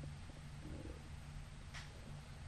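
Faint room tone in a pause of speech: a steady low hum, with a brief soft click near the end.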